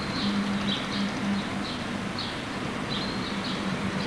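Small birds chirping in short, repeated calls over steady outdoor background noise, with a low steady hum underneath.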